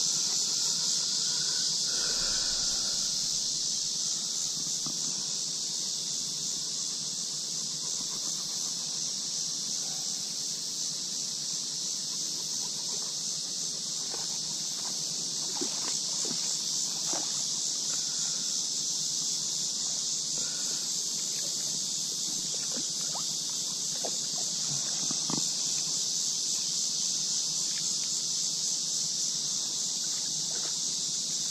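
A steady, high-pitched drone of summer insects in the streamside trees, unbroken throughout, with a few faint clicks.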